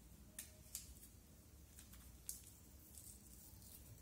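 Near silence with a few faint, light ticks, about three, from a small plastic bag rubbed between the fingers as black pepper is sprinkled from it.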